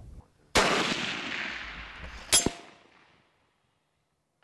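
A scoped bolt-action rifle fires one shot about half a second in, and its report echoes and fades over about two seconds. Almost two seconds after the shot comes a sharp metallic clang with a brief ring: the bullet striking a steel target downrange.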